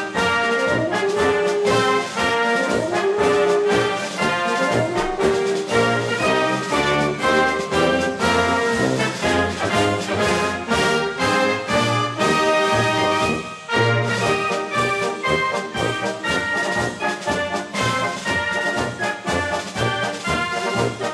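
Military brass band playing a march as it marches: trombones, trumpets and a sousaphone over a steady bass drum beat.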